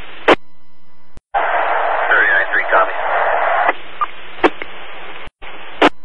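Scanner audio of fire-dispatch radio between transmissions: steady radio hiss, with a louder burst of static from about one to four seconds in that carries a faint, unintelligible voice. Sharp squelch clicks sound near the start, in the middle and near the end.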